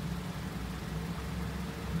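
Car engine idling: a steady low rumble with a faint hum.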